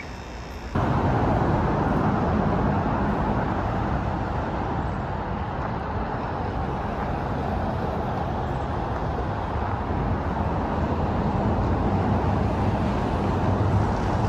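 Steady road traffic noise from the highway overpass overhead, cutting in abruptly about a second in and holding at an even level.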